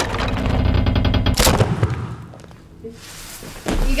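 A rapid volley of sharp hits, like gunfire, ending in one loud impact about a second and a half in that rings out and dies away. A low thump comes just before the end.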